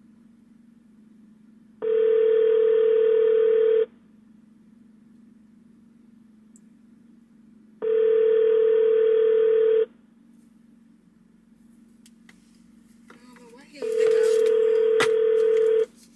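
Telephone ringback tone of an outgoing call: three steady two-second rings, one every six seconds, with the call going unanswered.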